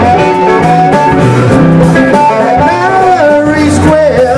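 Instrumental break in a trop rock song: a lead guitar melody with sliding, bending notes over the band.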